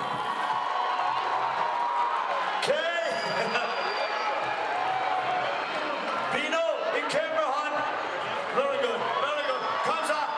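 A man's voice calling out in short phrases over the steady noise of a crowd in a large tent.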